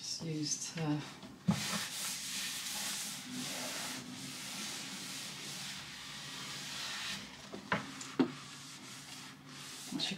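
A towel rubbing back and forth over a desk top as it is wiped down after a baking-soda scrub. The rubbing runs steadily from about a second and a half in until about seven seconds, then gives way to a couple of light knocks.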